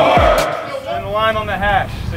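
Mostly speech: music with a heavy bass line stops suddenly less than half a second in, and a man's voice talking follows.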